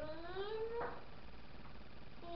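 A child's voice sliding upward in one long wordless sung note lasting about a second, ending in a short click.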